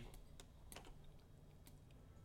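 Near silence: room tone with a few faint, scattered clicks from a computer keyboard and mouse.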